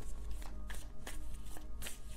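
Tarot deck being shuffled by hand: a few short, crisp snaps of cards against cards.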